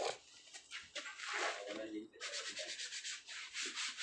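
Gloved hand rubbing and scraping over the rubber tread of a worn truck tyre: a run of rough, hissy strokes, thickest in the second half.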